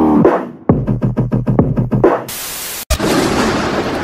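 A brief blast of electronic music with a fast drum-machine beat over a low bass, then about half a second of flat static hiss. A sharp click follows, and then the noisy rumble of thunder.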